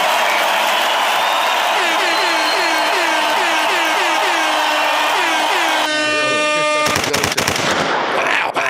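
A loud sound-effect clip played from a phone into the podcast mix. It starts suddenly as a dense hiss with a string of short falling chirps, changes about six seconds in to a steady buzzing tone for about a second, then ends in a rapid run of sharp cracks.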